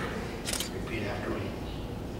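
Faint, murmured voices with a single sharp click about half a second in.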